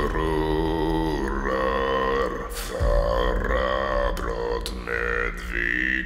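Male voice singing a slow, sustained melody in Old Norse, with held notes changing every half second to a second over a steady low drone.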